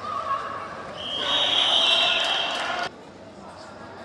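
Referee's whistle blown once in one long, shrill blast of nearly two seconds that cuts off sharply, whistling the play dead. Voices shout under it.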